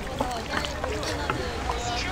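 A metal ladle stirring a thin sauce in a large wooden mortar, the liquid sloshing, with a few light clinks of the ladle against the mortar.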